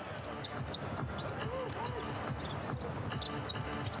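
Game sound from a basketball arena: crowd murmur with a basketball bouncing on the hardwood court in short knocks, and faint voices underneath.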